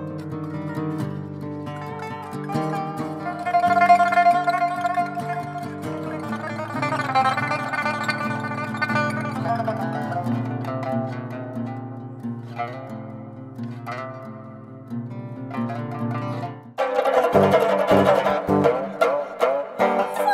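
Pipa and guitar music: plucked, ringing notes over long sustained low notes. About 17 s in it changes suddenly to a louder, denser passage.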